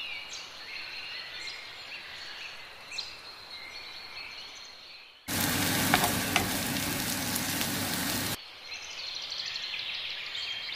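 Diced onion sizzling in hot oil in a frying pan while a wooden spoon stirs it, with a couple of sharp knocks of the spoon. The loud sizzle starts suddenly a little after halfway, lasts about three seconds and cuts off abruptly.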